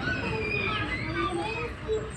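Children's voices: a young boy speaking or reciting, with other children's voices around him, over a low steady rumble.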